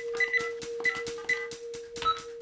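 Fax machine keypad beeping as its keys are pressed: a few short, high beeps over cartoon background music with a fast, steady beat.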